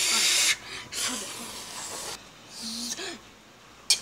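A person hissing through the mouth as a sound effect for something boiling hot: one loud hiss at the start, then two shorter, fainter ones.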